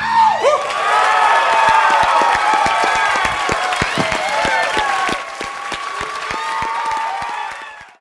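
A live audience applauding and cheering with whoops and yells once a song ends. The applause fades out near the end.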